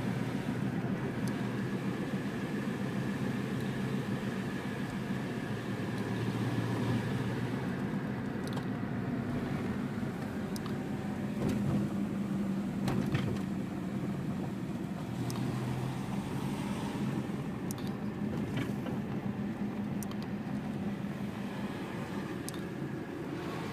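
Car engine running with tyre and road noise, heard from inside the cabin; the engine hum shifts in pitch a few times as the car slows and picks up speed. A few light knocks and clicks come through now and then.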